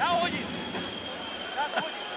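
Ice hockey arena crowd noise on a TV broadcast: an even background din from the stands, with a faint steady high tone, as a commentator's word trails off at the start and a short voice fragment comes near the end.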